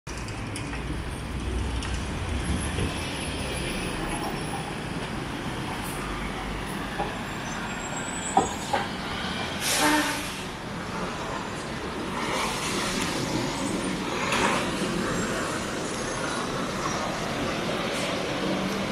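City street traffic: a steady wash of passing vehicles with a low engine rumble in the first few seconds. Two sharp knocks come a little after eight seconds, followed near ten seconds by a short burst of hiss, with fainter hisses a few seconds later.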